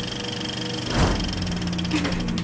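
Title-card intro sound effects: several held tones over a fast, even mechanical rattle, with a swelling whoosh about a second in.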